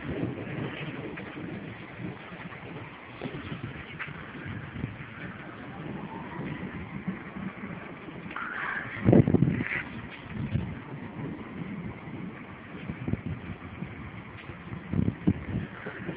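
Outdoor background noise with wind buffeting the phone's microphone, and a louder bump about nine seconds in.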